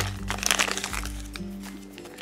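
Plastic blind-bag packet crinkling and tearing as it is opened by hand, the crackle densest in the first second and then thinning out, over background music with steady held notes.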